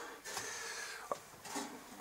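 Faint handling of a small sheet-metal snow feeder as it is picked up, with one light click about a second in.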